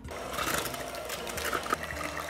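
Electric hand mixer running steadily, its beaters whirring through a thin liquid custard batter of eggnog and eggs in a ceramic bowl.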